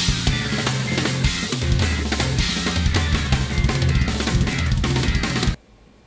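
Prog rock band recording with the drum kit out front: bass drum, snare and cymbal hits over a steady bass line, the drummer playing fills over the bar line between the band's unison hits. The music cuts off suddenly about five and a half seconds in.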